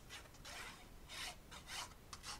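Faint rubbing of a precision-tip glue bottle's tip drawn along cardstock, in a few short, irregular strokes as a thin line of liquid glue is laid down.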